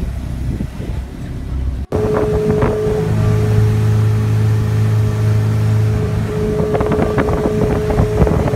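Motorboat under way: its engine runs with a steady low drone and a held higher hum, with wind on the microphone. An edit cut about two seconds in brings the engine sound in abruptly, louder than the rumbling noise before it.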